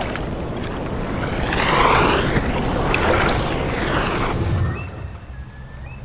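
Eerie soundtrack ambience of wind and water: a whooshing rush of noise swells to a peak about two seconds in and fades after about four seconds. A few faint, short whistling glides follow near the end.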